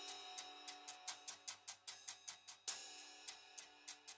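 Quiet demo of Audio Imperia's Cerberus cinematic drum library: a steady ticking percussion pattern of about seven or eight clicks a second under held tones. A stronger ringing hit comes near the three-quarter mark.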